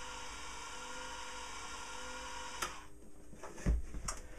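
Homemade antenna rotator's small electric motor, taken from a converted hand drill, running steadily through its gear drive with a whine, then cutting off with a click about two-thirds of the way in. A soft knock of handling follows near the end.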